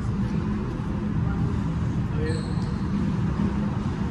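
Steady low rumble of room noise in an indoor squash court, with a brief high squeak of a sneaker on the wooden court floor a little after two seconds in.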